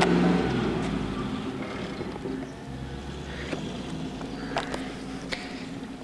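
A motor vehicle's engine running, its sound fading away over the first couple of seconds. After that comes a faint steady outdoor background with a few light clicks.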